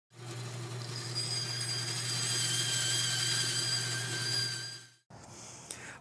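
A machine's electric motor running steadily, a low hum under a high whine, fading in at the start and fading out about five seconds in.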